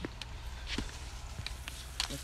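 A few light knocks and rustles as a landing net holding a small carp is lowered onto the grass, over a steady low rumble.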